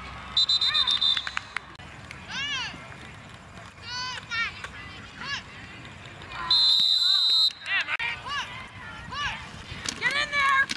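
Two loud, steady, high-pitched whistle blasts of about a second each, one near the start and one about six and a half seconds in, typical of a referee's whistle at a football game. Between them, short high-pitched shouts from young voices.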